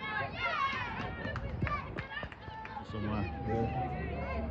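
Women footballers shouting calls to each other across the pitch during open play, high-pitched and overlapping, with a few sharp knocks in between.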